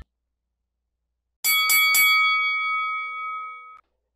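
A bell sound effect struck three times in quick succession, starting about a second and a half in, its ringing tones fading over about two seconds before cutting off abruptly.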